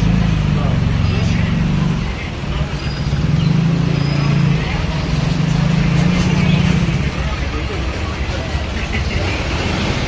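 Indistinct voices over a steady low hum of background noise.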